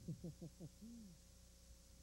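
A man's voice: a few quick murmured syllables, then a short low "hmm" about a second in, over a steady low electrical hum.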